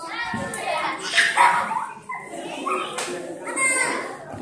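Young children chattering and calling out together in a crowd, with a louder cry just over a second in.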